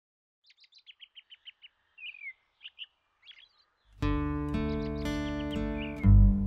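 Birdsong: a quick series of short chirps, then a down-slurred call and scattered chirps. About four seconds in, music comes in loudly with a sustained chord, and the birds keep calling over it.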